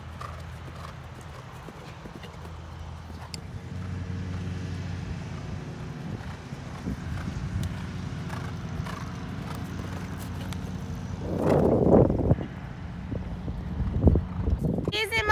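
A horse cantering on grass, its hoofbeats soft and repeated over a steady low hum. About eleven seconds in, a louder burst of noise lasts about a second.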